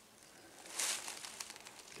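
Faint outdoor quiet with one brief rustle or crunch just under a second in.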